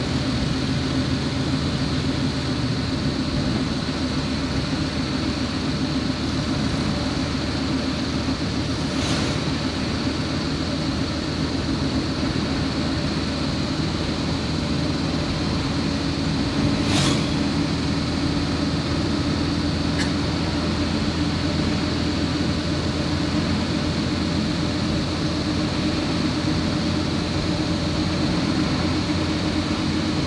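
Steady engine and tyre noise from inside a car driving slowly along a smooth asphalt road, a constant hum with a couple of brief knocks about nine and seventeen seconds in.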